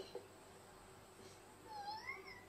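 A cat meowing faintly on the anime's soundtrack: one pitched meow near the end that dips and then rises.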